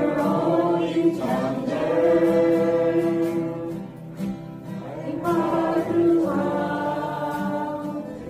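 A group of voices singing a slow worship song together in long held notes, with an acoustic guitar strummed as accompaniment. The singing dips briefly about halfway through before carrying on.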